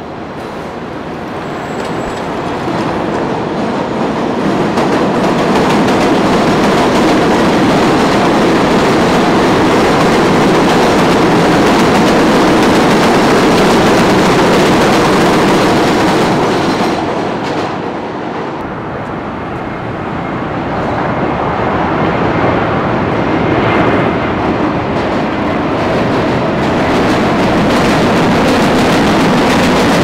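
A New York City Subway 7 train running on the elevated steel structure overhead, a loud, continuous rumble of wheels on the rails. It builds over the first several seconds, eases for a couple of seconds past the middle, then swells again and holds.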